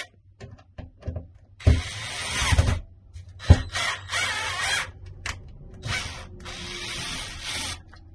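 Cordless drill running in several bursts of a second or two each, drilling into the wall, with a sharp click between the first and second bursts.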